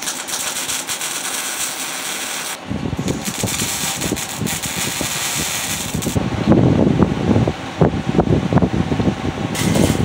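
Wire-feed welder crackling and spitting as a bracket is welded onto a steel truck frame. A finer hiss for the first couple of seconds gives way to a coarser, louder crackle, with a short break about seven and a half seconds in.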